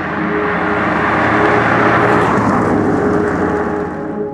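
Peugeot 205 XS, a carburettor-fed hatchback, driving past: a rushing engine and tyre sound that builds to a peak about halfway through and eases off, then cuts off sharply at the end. A soft ambient music bed with held tones runs underneath.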